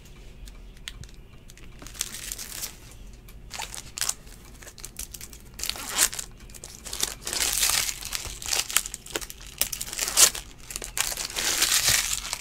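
Foil wrapper of a Topps Chrome trading-card pack crinkling and tearing as it is opened by hand, with cards rustling as they are handled. Sparse at first, busier and louder in the second half.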